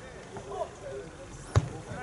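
A football kicked once, a single sharp thud about one and a half seconds in, amid players' shouts on the pitch.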